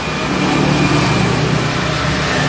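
An engine running steadily, a low drone with a rush of noise over it.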